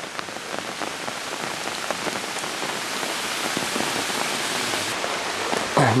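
Steady hiss of water, rising slowly in level, with faint scattered ticks.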